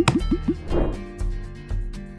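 Logo-sting music: a quick run of four short rising plop sound effects in the first half second, a brief swish just before a second in, then background music with a steady beat.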